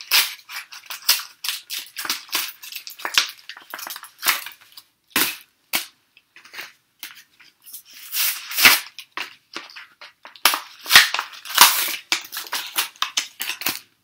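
Yu-Gi-Oh booster pack retail packaging, cardboard and foil wrappers, being torn and crinkled by hand in irregular sharp crackles and rustles, busiest in the second half.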